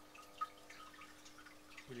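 Faint scratching and small ticks of a pointed potter's tool scribing an outline on a clay teapot body around the offered-up spout, with one sharper tick about half a second in, over a faint steady hum.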